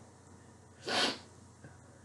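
A single short, hissing burst of breath from a person, about a second in.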